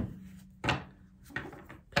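Two brief soft knocks, the first a little over half a second in and the second weaker, over a quiet room.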